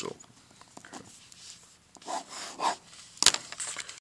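Pen scratching on paper as the answer is written out and circled, with a couple of short, louder strokes, then a sharp click a little after three seconds in.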